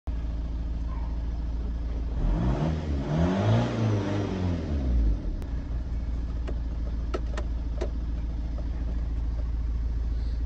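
Ford Galaxy 1.9-litre turbo-diesel idling, heard from inside the cabin. It is revved once for about three seconds, its pitch rising and falling back to idle, followed by a few light clicks near the end.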